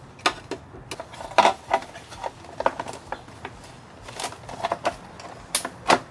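Hard plastic battery cover of a Jetson Bolt Pro e-bike being handled and pressed into place on the frame: a run of irregular plastic clicks and knocks, the sharpest about a second and a half in and near the end.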